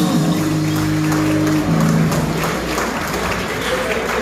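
A live rock band of electric guitars, bass and drums holds its closing chords, which ring out and stop about two and a half seconds in, ending the song. Audience applause fills the rest.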